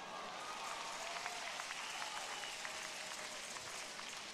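Congregation applauding: a steady, even patter of many hands clapping at a moderate level.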